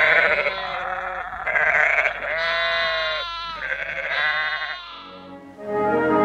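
Sheep and lambs bleating, several calls one after another, some with a wavering pitch. Brass-led orchestral music comes in near the end.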